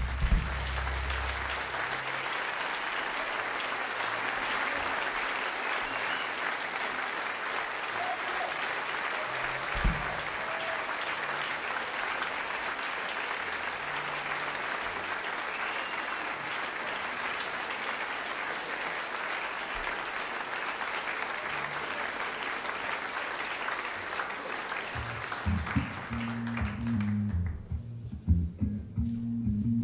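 Concert audience applauding steadily, with one low thump about ten seconds in. Near the end the applause fades as low bass notes from the Hammond organ start the next tune.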